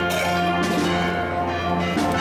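Church bells pealing, several bells struck in overlapping succession and ringing on.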